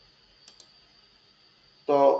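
Faint room hiss with two quick, faint clicks about half a second in, then a man's voice begins just before the end.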